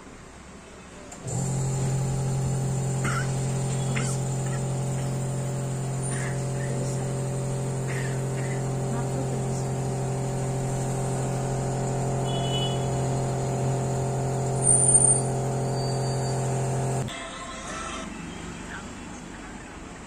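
Phone nano-coating machine running with a steady, even hum that starts suddenly about a second in and cuts off abruptly near the end, with a brief louder sound just before it stops.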